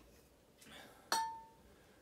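A single clink of a glass whisky bottle knocking against glass about a second in, ringing briefly, as the bottles are handled; a faint rustle comes just before it.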